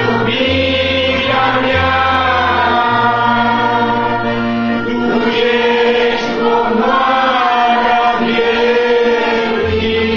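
A group of voices singing a Christian worship song together, over long sustained low accompaniment notes that change every second or so.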